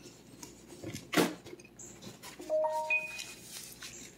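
A person chewing a mouthful of food, with a sharp click about a second in and a few short, faint clear tones shortly after the middle.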